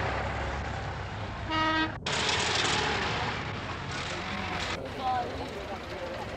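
A vehicle horn gives one short toot, about half a second long, about one and a half seconds in, over a steady background of passing vehicles. The soundtrack then breaks off sharply and resumes as a noisy rumble.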